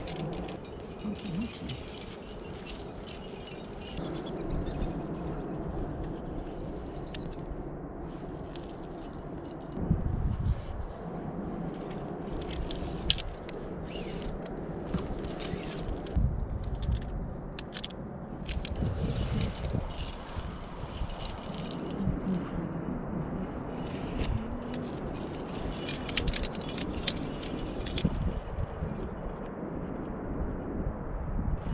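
Metal climbing gear (carabiners and protection on the rack and belay) clinking and jingling now and then, with the rope sliding, over a low rumble of wind or handling on the microphone. There are a few dull thumps, the loudest about ten seconds in.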